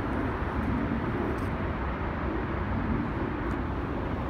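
Steady road traffic noise outdoors: a low, even rumble with no distinct events.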